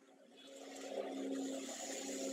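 A steady hum with a hiss over it, swelling in during the first second and then holding.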